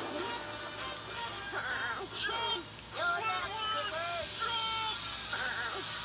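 Cartoon soundtrack playing from a TV: music with wavering, sung-sounding voice tones. A steady hiss comes in about four seconds in and the sound gets louder.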